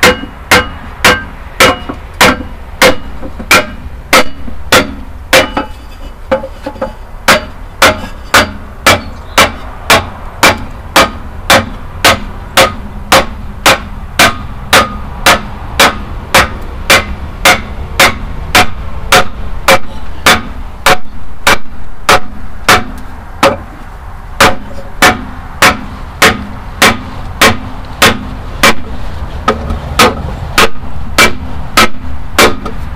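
A small sledgehammer strikes an ash board laid on top of a cylinder liner, driving the liner down into the bore of a Perkins 4-236 diesel engine block. The blows are steady and evenly spaced, about two a second, and the liner goes in with little resistance.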